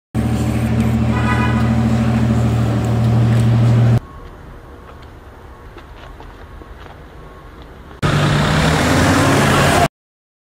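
Car engine running with a steady hum, heard in cut-together clips: loud for about four seconds with a brief higher-pitched toot about a second in, much quieter from about four to eight seconds, then loud again until it cuts off abruptly near the end.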